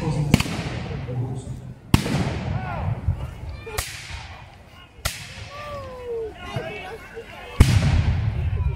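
Five black-powder musket shots fired with blanks, spaced irregularly about one to two seconds apart, each a sharp crack with a trailing echo; the last, near the end, is the loudest.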